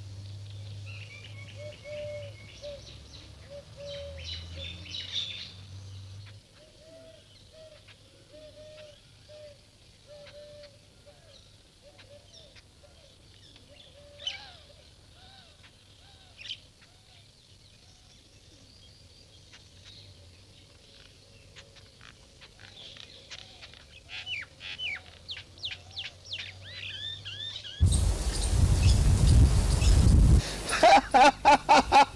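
Birds chirping and calling, with quicker runs of chirps toward the end and a faint low hum in the first few seconds. About two seconds before the end, a sudden loud rush of noise cuts in and drowns them out.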